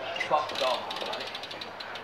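BMX rear hub freewheel clicking rapidly and evenly as the bike is wheeled along, most distinct in the second half.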